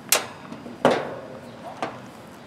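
Three sharp knocks, roughly a second apart, as test equipment is handled and set down on the sheet-metal top of an air-conditioner condenser unit.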